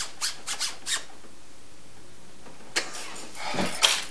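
A zipper on a knit cardigan being zipped in four quick, short strokes, then a longer zip with fabric rustle near the end.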